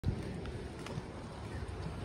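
Wind rumbling on the microphone, with a few faint footstep taps on the concrete path.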